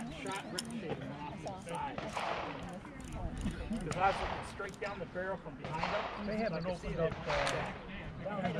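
Indistinct talking among several people, not picked up clearly, with a few sharp clicks or knocks, the loudest about seven and a half seconds in.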